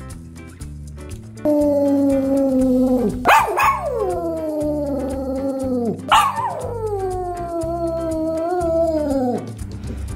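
Small dog howling: one long held howl from about a second and a half in, then two more howls that each rise sharply and slide slowly down in pitch, over a background music track.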